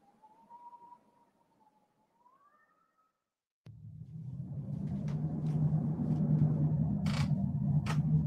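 Wind sound effects opening an audio drama: a faint wind howl that wavers and then rises in pitch, then a low gale-wind rumble that starts suddenly about halfway and swells, with a few sharp creaks or knocks over it.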